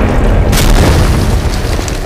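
Loud booming explosion sound effect, with a sharp crack about half a second in over a deep rumble that fades toward the end.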